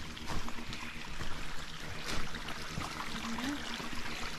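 Faint trickle of water in a nearly dry creek bed, with scattered light clicks and rustles.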